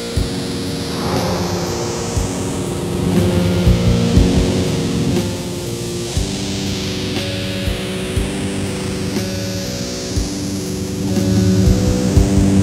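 Black metal band playing live: slow, held guitar chords that change every few seconds, with scattered low drum hits and a slow sweeping hiss in the high end.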